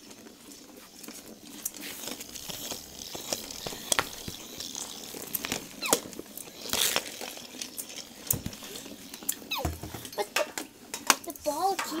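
A battery-powered Weasel Ball, a motorized plastic ball dragging a furry tail, rolling about on a concrete floor, with scattered clicks and knocks as it bumps into other toy balls and objects.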